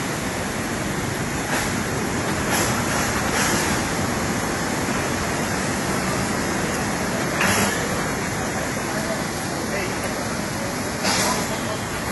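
Steady rushing of floodwater, an even noise with a few brief louder swells.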